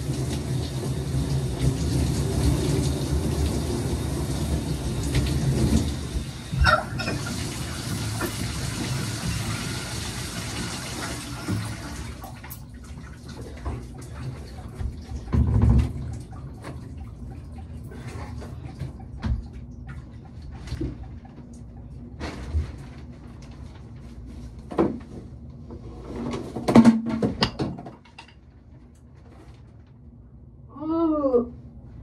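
Shower running: a steady rush of water spray that shuts off abruptly about twelve seconds in. After it come scattered knocks and bumps, with a louder cluster of thuds near the end.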